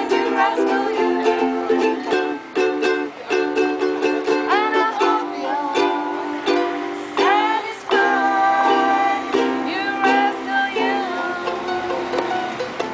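Several ukuleles strummed together in a steady, rhythmic chord pattern, with a higher melody line that slides and bends in pitch above the chords.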